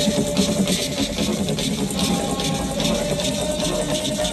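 Electronic dance music played loud over a festival sound system and picked up by a phone microphone. This is a sparse, washy passage of held synth tones over noise and fast high ticks, with no heavy drop.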